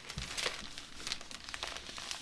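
A clear plastic storage sleeve crinkling and paper scraps rustling as they are shuffled through by hand, a run of small irregular crackles.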